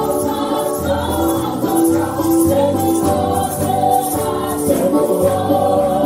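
Gospel worship music: a group of voices singing together over a steady bass line and a rhythmic beat.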